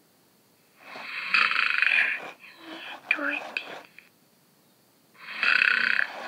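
Big Hugs Elmo plush toy playing recorded snoring from its built-in speaker in its sleepy mode: two loud snores about four seconds apart, with short soft murmured sounds between them.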